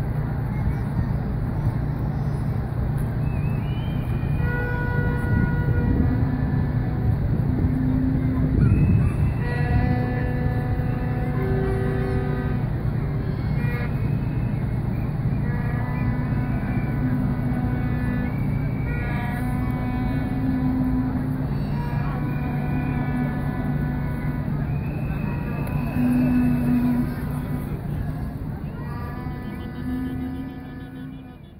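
Horns blown again and again in held notes of one to three seconds, sometimes several at once. Underneath are the chatter of a crowd and a steady low rumble.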